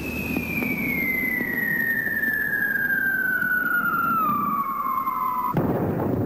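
Rocket launch footage: engine roar with a single whistle falling steadily in pitch for about five seconds. Near the end the whistle cuts off and a heavier rumble takes over as the rocket crashes and explodes.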